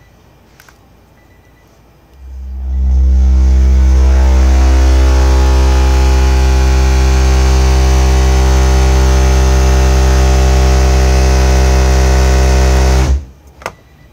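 EMF Lowballer 12-inch subwoofer playing a loud, steady deep bass tone with buzzing overtones, an SPL burp driven at about 750 watts. The tone starts about two seconds in, swells up over about a second, holds level, and cuts off suddenly about a second before the end.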